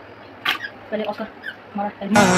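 A short splash of water in a plastic bucket about half a second in, as hands grab an Oscar fish in the water, followed by a few brief, quiet vocal sounds.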